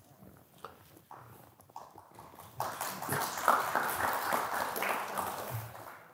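Audience applauding: a short round of clapping that starts about two and a half seconds in and fades out near the end.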